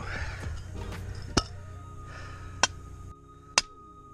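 Three sharp metallic strikes about a second apart: a hammer knocking the steel target-hanger post back into the sand. Steady background music plays under them.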